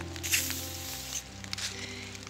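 WD-40 aerosol can spraying onto a van's side panel: one short hiss lasting just under a second, starting about a third of a second in. Under it is background music with steady held tones.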